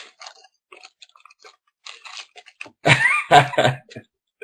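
Hockey trading cards being handled and slid against one another by hand, making faint scattered crackly clicks. A brief, louder burst of a man's voice comes near the end.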